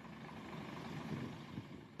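Low, steady motor-vehicle engine and traffic noise, likely from the coach bus, swelling slightly around the middle and easing off near the end.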